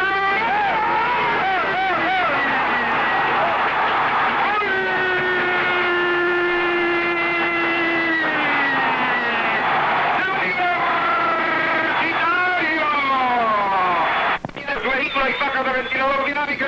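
Spanish-language radio football commentator shouting excitedly. About four seconds in he holds one long drawn-out cry for several seconds, which slides down in pitch before fast excited talk resumes.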